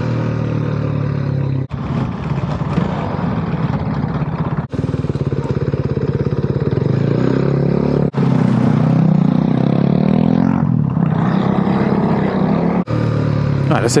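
Motorcycle engine running while riding, its note rising and falling with the throttle between about seven and eleven seconds.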